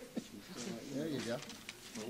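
Low, indistinct voices of a few people talking quietly, with no clear words.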